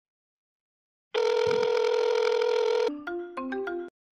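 Short electronic jingle: one steady tone held for about two seconds, then a quick run of lower notes that stops just before the end.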